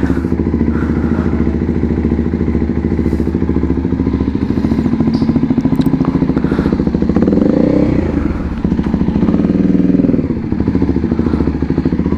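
Kawasaki Ninja motorcycle engine running at low speed, a steady pulsing note. Its pitch rises about seven seconds in and falls away again around ten seconds as the bike slows.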